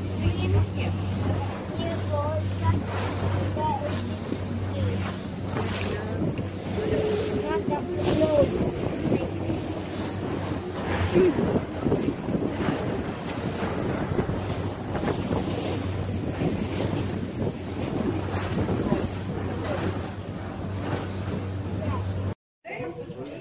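Tour boat's engine droning steadily, with water rushing past the hull and wind buffeting the microphone. The engine hum is louder for the first few seconds, then settles lower.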